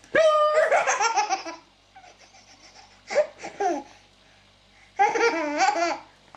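A baby laughing hysterically in three bursts. The first is a long squealing laugh at the start, the second is shorter, about three seconds in, and the third comes near the end.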